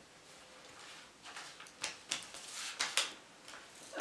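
Hands working at a tabletop: a few short, sharp rustles and taps from about a second in until near the end, as salt-dough ornament clay and a sheet laid under it are handled and pressed.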